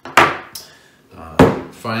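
Two sharp knocks on the workbench, about a second and a quarter apart, the second the louder, as a leatherworking maul and stitching irons are set down.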